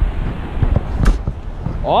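Wind buffeting the microphone in an irregular low rumble, with a single sharp click about a second in.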